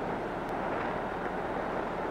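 Steady rushing noise on the deck of a moving ship: ship machinery and wind.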